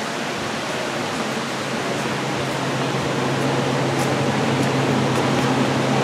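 Steady hiss with a low machine hum that sets in about a second in and grows slowly louder, from the inclined elevator's machinery.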